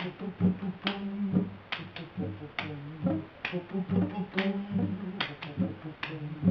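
Acoustic guitar playing a slow roots-reggae groove: low notes held under sharp clicks that fall about once a second.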